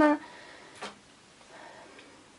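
A single short click of metal on metal about a second in, from hand work at the needle bed of a Silver Reed double-bed knitting machine, with a faint soft rustle after it in an otherwise quiet room.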